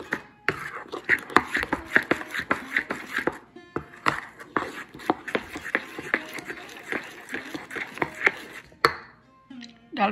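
Metal spoon beating thick ground-lentil batter in a stainless steel bowl: a quick, irregular run of wet squelches and clinks of spoon against steel, about three or four a second, ending with a single sharp clink near the end.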